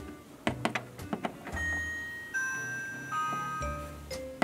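A few light plastic taps, then a doorbell chime sound effect: four ringing notes that step down in pitch one after another.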